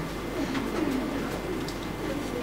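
Quiet classroom background with a faint, low murmuring voice and a few light ticks.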